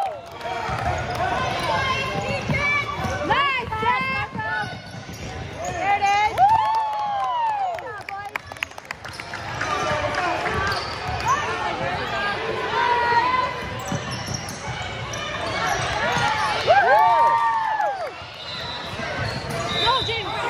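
Basketball game sounds on a hardwood gym floor: sneakers squeak in sharp rising-and-falling chirps, loudest twice, once about six seconds in and again near the end, over the ball bouncing. Voices of players and spectators run underneath, in the echo of a large gym.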